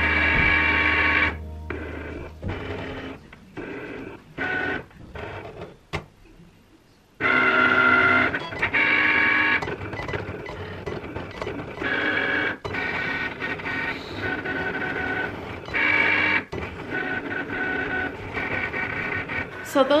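Electronic craft cutting machine cutting out a sheet of printed stickers. Its motors whir in short stop-start bursts of steady whine that change pitch from burst to burst as the cutting head and mat move, with a brief lull about six seconds in.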